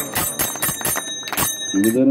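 A metal bell struck rapidly and repeatedly, its steady high ringing tones sounding over the strokes and stopping about one and a half seconds in; a man's chanting voice begins just after.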